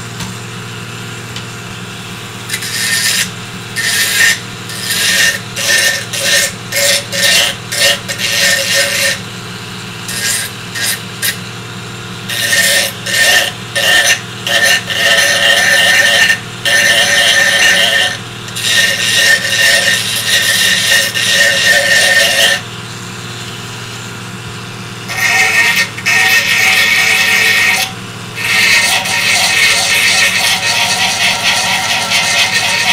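Small handheld pen-style rotary tool running with a steady hum, its bit grinding into 3D-printed plastic in repeated bursts: first a run of short rapid touches, then longer passes of several seconds. The bit tends to melt the plastic rather than sand it.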